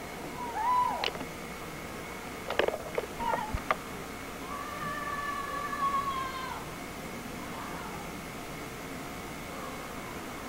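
A cat meowing: one short call that rises and falls about half a second in, then a long drawn-out call a few seconds later. A few sharp clicks come between the two calls.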